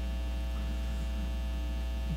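Steady electrical mains hum in the lectern microphone's audio chain: a low, even buzz with a row of higher overtones, unchanging throughout.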